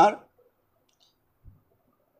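A man's speech trails off in the first moment. Then there is near silence, broken only by one soft, short knock about a second and a half in.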